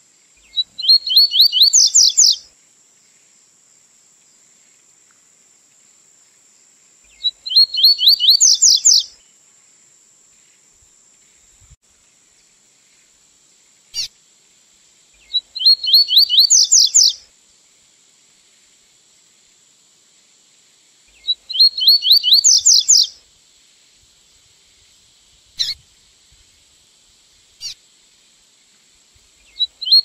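A double-collared seedeater (coleiro) singing the 'tui tui zero zero' song, a short phrase of rapid notes that climbs in pitch. The phrase repeats five times, about every seven seconds. It is a tutor recording (encarte) meant for young birds to learn the song.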